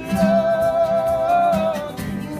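Unamplified live acoustic band: a voice holds one long note, wavering slightly, over acoustic guitar.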